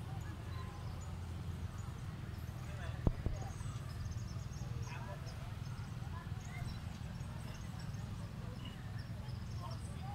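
Steady low background rumble with faint, scattered short chirps and squeaks, and one sharp click about three seconds in.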